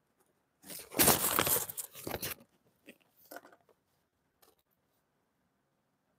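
Chunks of fire glass crunching and grating together as they are handled and set down by hand. There is one loud crunch lasting about a second and a half, then a few short, fainter scrapes.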